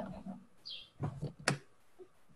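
Two sharp clicks about half a second apart, with a brief higher squeak just before them, over faint room noise.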